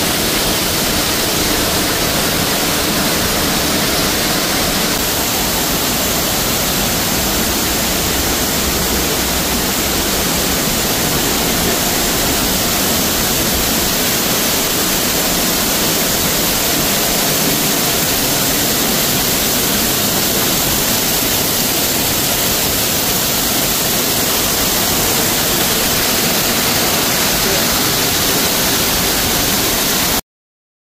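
Large waterfall pouring close by: a steady, loud rush of falling water.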